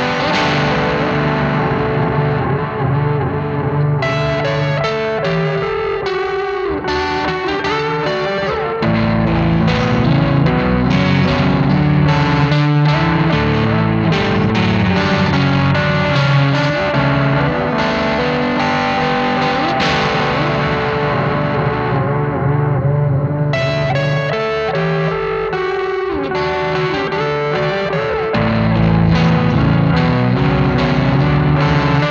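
Ibanez YY10 electric guitar playing a heavy riff through a mid-pushed op-amp overdrive into an analog delay, the driven notes trailing echoes. The part gets fuller and louder in the low end about nine seconds in and again near the end.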